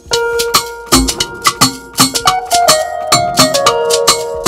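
A producer's beat playing back from the computer: the intro section with its break, made of sharp percussion hits in a steady rhythm, a deep kick about a second in, and a plucked electric guitar melody that steps up and down over a held tone.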